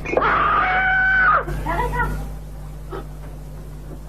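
A woman screaming in fright: one long high scream of about a second and a half, then a few shorter broken cries. It is the startled scream of someone nearly struck by a heavy flowerpot falling from a balcony.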